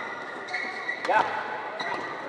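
Badminton rackets striking the shuttlecock in a fast doubles rally: a sharp hit about a second in and another near the end. A shout of "yeah" comes with the first hit, over spectator chatter.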